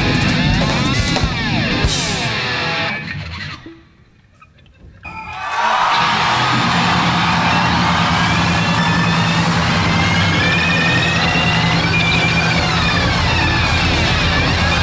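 A live rock band with electric guitars, bass and drums playing loudly. About three and a half seconds in the music drops out almost to silence for a moment, then the full band comes back in with gliding electric guitar lines over a steady bass.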